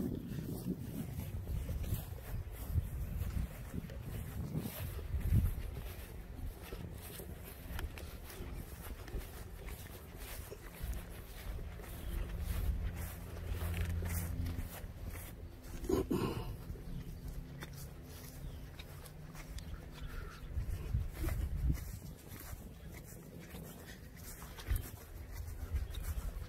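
Wind rumbling on a handheld phone microphone outdoors, with the small knocks of footsteps and handling as the camera is carried. About sixteen seconds in there is one short call-like sound.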